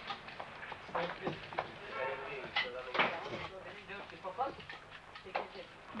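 Background chatter of men's voices in a coffeehouse, broken by a few sharp clicks and knocks.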